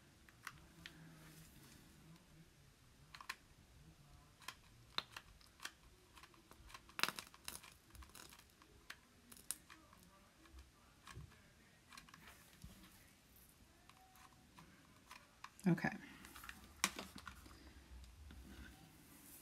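Quiet, scattered clicks and taps of hands handling a hot glue gun and burlap on a craft cutting mat. A short vocal sound comes near the end.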